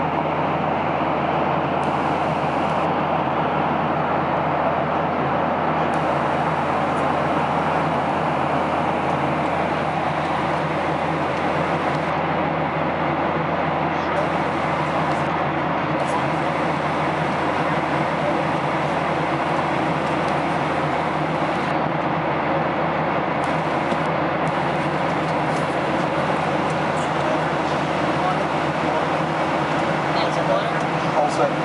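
Steady cabin noise of a jet airliner climbing out: engine and rushing-air noise as an even, unbroken rush with a low hum beneath it.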